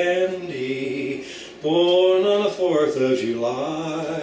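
A man singing unaccompanied, holding a few long, steady notes in short phrases.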